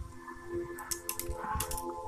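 Alco MSS-4200RG microswitch's small plastic casing being pried and broken open with pliers: a quick cluster of small cracks and clicks about a second in.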